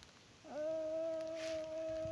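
A single long vocal call held at one steady pitch, starting about half a second in and still going at the end.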